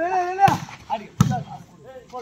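A volleyball being struck by hand twice in a rally: a sharp smack about half a second in, then a louder one just over a second in. A player's held shout comes at the start, with scattered voices around.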